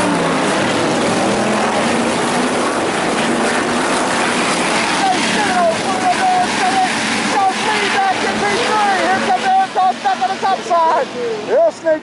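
A field of IMCA Hobby Stock race cars running at racing speed on a dirt oval: a dense, steady engine and tyre noise. From about halfway in, a voice, most likely the announcer, talks over it.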